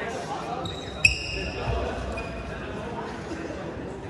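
A badminton racket striking a shuttlecock: one sharp smack about a second in, with a brief high ringing after it, echoing in a large gym.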